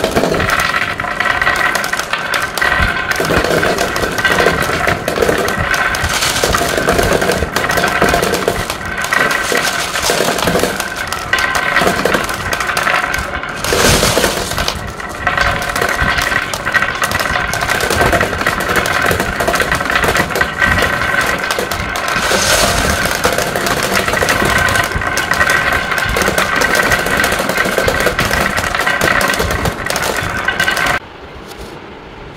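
Many glass marbles rolling down carved wooden zigzag tracks into a wooden bowl. They keep up a steady rolling sound, with dense clicking of glass on glass and glass on wood.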